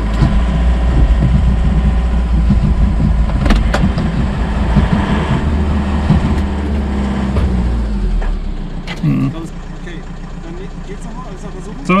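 The cold diesel engine of an old camper van cranking on its starter for about eight seconds without catching, then stopping. It will not fire because the anti-theft cut-off switch was left on.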